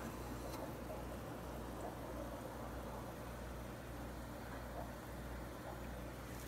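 Steady low electrical hum with a faint hiss: the air supply running the sponge filters of a row of shrimp aquariums.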